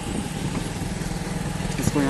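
Vehicle engine running steadily at low revs, heard from inside a vehicle as a low pulsing hum. A short click comes near the end.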